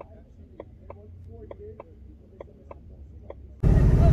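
Steady sharp ticking, about three ticks a second, over a low hum and faint distant voices. Near the end it cuts abruptly to the Shelby GT500's supercharged V8 running loud under way, heard from inside the cabin.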